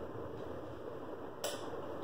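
Steady low background hiss of a small room, with one short sharp click about one and a half seconds in.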